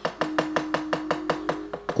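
A dalang's keprak and cempala knocking against the wooden puppet chest in a fast, even roll of about nine sharp strikes a second, the signal that cues a puppet's entrance. One steady held note sounds beneath the knocking.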